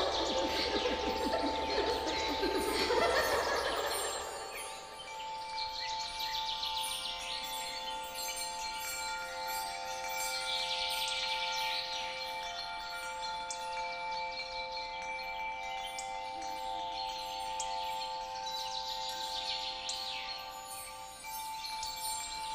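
Fantasy forest ambience: a sustained, shimmering chime-like magical tone with birds chirping in recurring flurries. The first four seconds are busier and louder before the tone settles in steadily.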